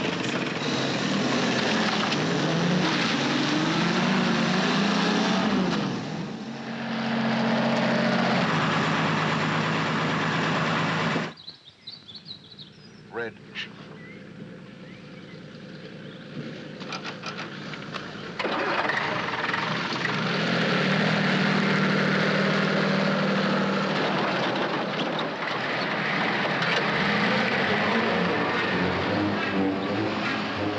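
Motor vehicle engines on a film soundtrack: a jeep's engine revving up and down as it drives off, cut off abruptly about eleven seconds in. A quieter stretch with a few rattles inside a lorry cab follows, then from about eighteen seconds a lorry engine runs loud and steady.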